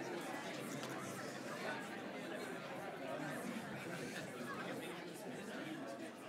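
Faint audience chatter: a steady murmur of many overlapping voices in a hall, with no single voice standing out.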